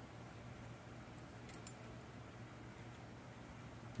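Near silence: quiet workshop room tone with a low steady hum and a couple of faint ticks about a second and a half in.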